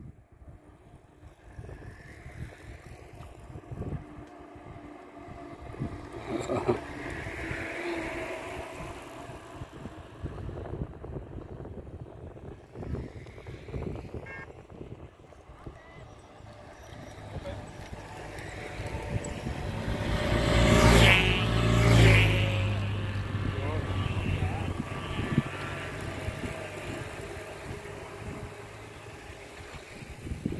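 A long column of cyclists riding past on an asphalt road: tyre noise and scattered riders' voices as groups go by. About two-thirds of the way through, a louder pass swells up and fades away again.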